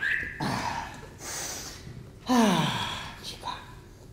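A man's wordless vocal and breath sounds: a gasp, a breathy hiss, then about two seconds in a falling vocal glide that slides down in pitch.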